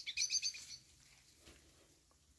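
A small bird chirping: a quick run of high chirps in the first second, then quiet.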